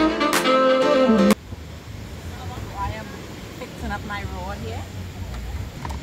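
Plucked-guitar background music that stops abruptly about a second in. It is followed by a low steady outdoor rumble and faint distant voices.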